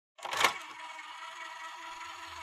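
An edited-in intro sound effect: a sharp click about half a second in, then a steady hiss with a faint steady hum.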